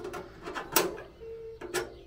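Wood pellets poured from a small metal scoop into a pizza oven's steel pellet hopper, rattling against the metal, with two sharp clicks about a second apart.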